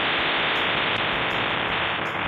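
Steady hiss of static from a security camera's own audio, with no other sound in it.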